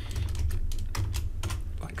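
Computer keyboard keystrokes: a handful of separate, irregularly spaced key presses as a formula is typed and entered.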